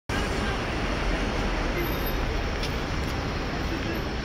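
Steady city street traffic noise: a constant low rumble and hiss of passing road vehicles.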